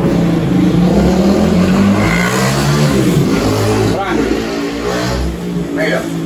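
A motor vehicle engine revving loudly, its pitch rising and falling several times.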